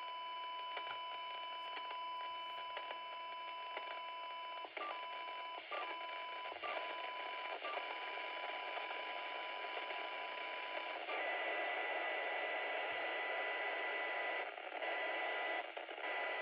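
Handheld two-way radio's speaker playing a faint 1 kHz FM test tone buried in receiver hiss, from a very weak generator signal at the edge of the radio's sensitivity. The tone breaks up several times and drops out about eleven seconds in, leaving only hiss as the signal is lost.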